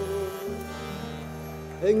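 Button accordion holding sustained chords, moving to a new chord about half a second in; the singing voice comes back in at the very end.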